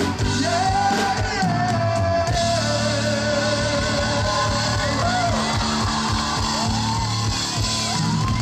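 Male singer with a live band holding one long sung note that sags slightly in pitch, then moving into shorter sung phrases over the band.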